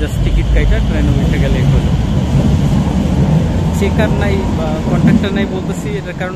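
Loud, steady low rumble of a train moving through the station, with voices over it. It eases off near the end.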